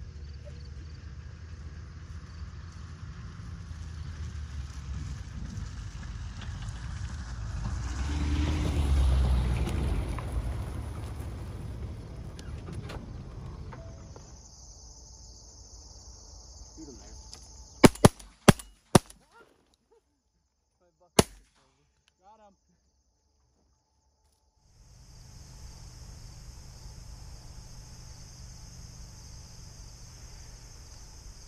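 Shotguns firing at pigeons: four quick shots in about a second, about 18 seconds in, then a single shot a few seconds later. Before the shots a low rumble swells and fades, and a steady chirping of insects runs behind it.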